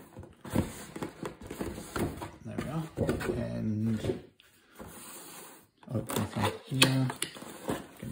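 Cardboard packaging being handled as a box's printed outer sleeve is pushed off and the inner box's lid lifted: scraping and sharp clicks, the loudest a sharp snap late on. Short bursts of a man's voice, with no clear words, come in alongside the handling.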